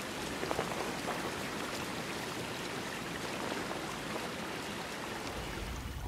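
Shallow creek water trickling steadily over stones and leaves, a constant watery hiss with small faint ticks.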